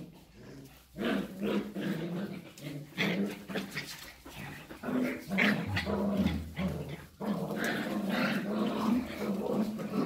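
Border collies growling as they play-fight, a string of rough growls that starts after a quiet first second.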